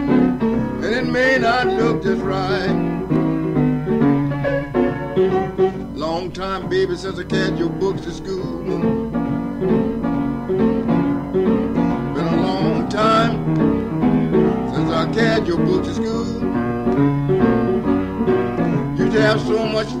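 Blues piano playing an up-tempo barrelhouse tune without pause, from a 1965 mono field recording.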